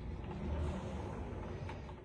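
A tall wooden closet door pulled open by its bar handle, with a steady low noise of movement that fades slightly toward the end.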